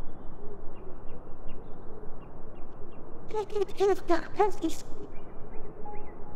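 A bird calls about five times in quick succession near the middle, over a steady outdoor background hiss. Faint, scattered chirps come earlier.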